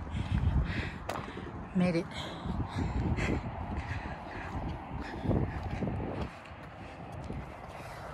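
Footsteps on a dirt trail, a few steps a second, over a fluctuating low rumble on the microphone, with a short spoken phrase about two seconds in.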